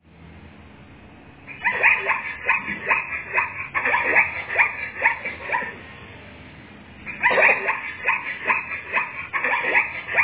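Zebras calling: two bouts of short, repeated yelping barks, about three a second, with a pause of a second or so between them.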